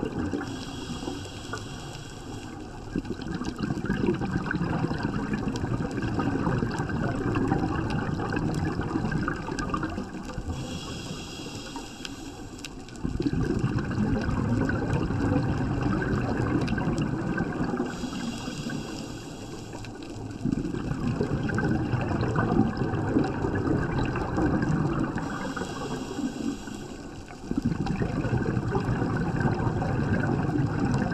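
Scuba diver breathing through a regulator underwater. Each breath is a hissing inhale of two to three seconds, followed by a longer, louder stretch of bubbling exhaled air. The cycle repeats about every seven to eight seconds, four breaths in all.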